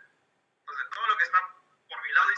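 Speech only: a person's voice in two short phrases with a brief pause between them, thin-sounding as if over a phone or online-call line.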